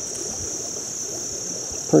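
Steady high-pitched insect chorus, one unbroken shrill tone, with a faint low hiss beneath it.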